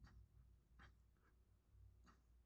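Near silence, with a few faint, brief scratches of fingers working modelling clay on the sculpture.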